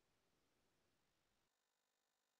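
Near silence: faint hiss of a muted video-call recording.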